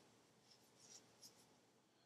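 Near silence: room tone, with a few faint, short rustles of a record sleeve being handled.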